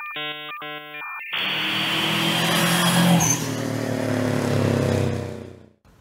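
Intro sting: two short electronic tones, then a car engine-revving sound effect with tyre noise that builds and fades out near the end.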